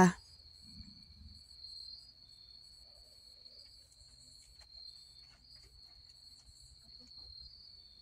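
Crickets trilling in one steady high tone, with faint scattered ticks and rustles.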